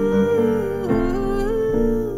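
A woman sings a long held note with piano accompaniment. The note dips and moves to a new pitch about a second in, then changes again near the end, over sustained piano chords.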